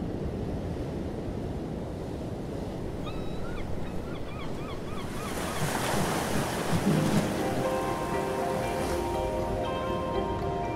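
Ocean surf breaking on a beach: a steady wash of waves that swells louder around the middle. A bird gives a quick run of short repeated calls about three seconds in, and soft music with held notes comes in near the end.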